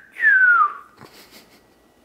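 A person whistling two falling notes: a short slide down right at the start, then a longer whistle that glides down in pitch and ends under a second in. The rest is quiet room tone.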